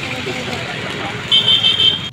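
Street traffic noise with a vehicle horn giving one short, high honk near the end.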